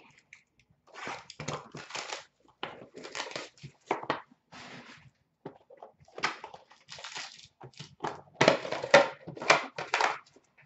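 Crinkling and tearing of a sealed trading-card box's plastic wrap and cardboard as it is unwrapped and torn open by hand. The sound comes in irregular crackly bursts with short gaps, loudest near the end.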